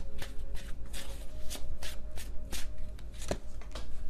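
A deck of tarot cards being shuffled by hand: a steady run of brisk swishes, about three or four a second.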